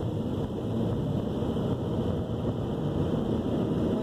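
Steady engine and road noise heard inside the cabin of a car driving slowly, a low even rumble.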